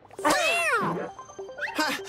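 A cartoon cat character's voice: one drawn-out cry falling in pitch for about a second, over background music. A short rising whistle-like sound follows near the end.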